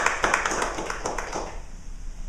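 A small group of people clapping, the applause dying away about a second and a half in.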